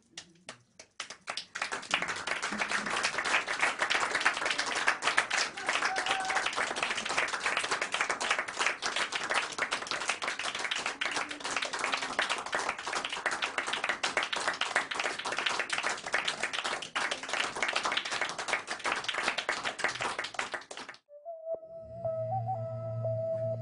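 Audience applauding: a few scattered claps, then steady applause from about two seconds in that cuts off abruptly near the end. A held musical note over low tones comes in just after the cut.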